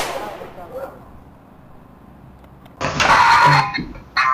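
The tail of a loud bang fading away, then a loud human shout of about a second, starting about three seconds in.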